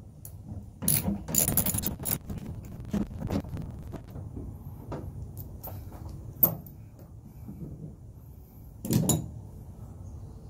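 Hand ratchet with a socket on an extension clicking as it backs out the tailgate handle bolts: a quick run of clicks about a second in, then scattered ticks, with a louder knock near the end.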